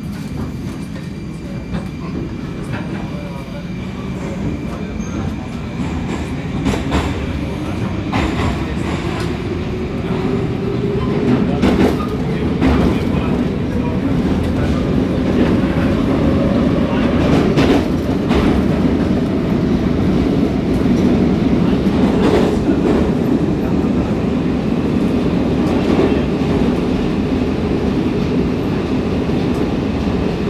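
Interior of an Oka 81-760/761 metro train pulling away and gathering speed: the traction-motor whine glides upward in pitch over the first half while the rumble of the running gear grows louder, with scattered clicks as the wheels cross rail joints. It then settles into a steady loud running noise.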